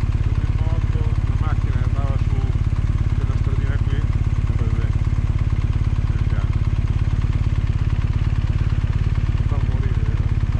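Motorcycle engine idling steadily with an even, fast pulse, with faint voices in the background about a second in and again near the end.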